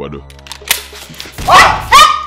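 Two men screaming in terror: loud cries that fall in pitch, from about halfway through to the end, over a film music score.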